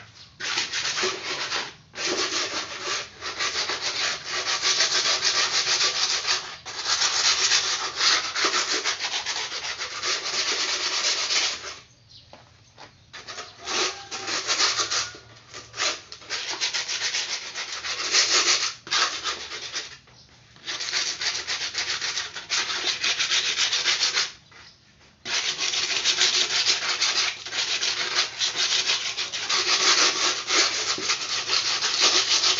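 Guinea pigs munching and tugging at long grass: a dense, crunchy rasping rustle in stretches of several seconds, broken by a few short pauses.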